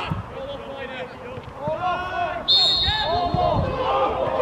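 Players shouting on a football pitch, and about two and a half seconds in a short, sharp blast on a referee's whistle, stopping play.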